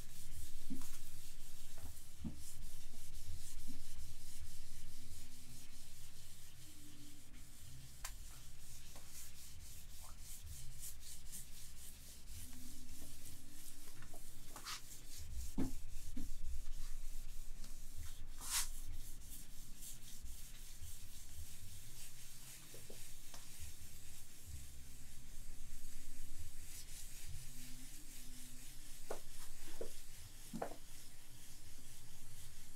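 A cloth eraser rubbing fluorescent marker off a glass lightboard: a continuous rubbing swish that swells and eases with each wiping stroke, with a few brief sharp squeaks or clicks, the loudest about two-thirds of the way through.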